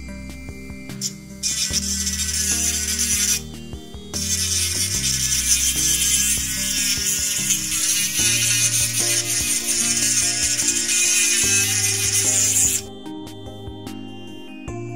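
Pen-style electric rotary tool grinding a metal alligator clip with a small bit: a loud, harsh hiss in two stretches, a short one of about two seconds and then a long one of about nine seconds that cuts off near the end. Background music plays underneath.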